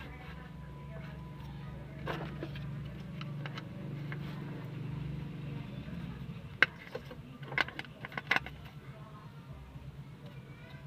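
White plastic cover of a Suzuki APV's under-dash fuse box being handled and pressed back into place: a few sharp plastic clicks, mostly in the second half, over a steady low hum.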